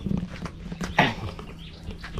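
A single short animal call about a second in, its pitch falling sharply from high to low.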